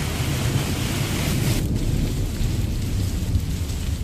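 Heavy rain hissing steadily, with a low rumble underneath. About one and a half seconds in, the rain hiss drops away suddenly and the low rumble goes on.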